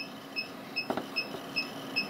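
A steady series of short, high electronic beeps, about two and a half a second, sounding while the antenna tunes up after a band change to 6 metres. A single click comes about a second in.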